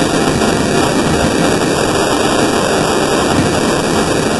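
Loud, steady, harsh roar of heavily effect-processed logo audio: a dense noise with no clear tune or voice left in it.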